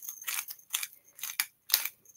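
Hand-twisted pepper grinder cracking peppercorns into a bowl of yogurt sauce, a run of short gritty crunches at about three a second.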